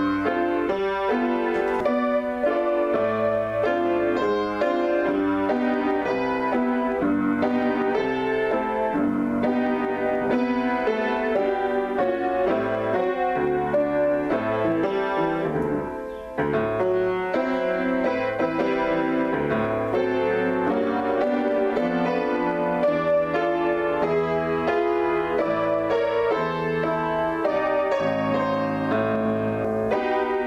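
Solo piano on a keyboard, playing a continuous flow of chords and melody. It briefly drops in level about halfway through.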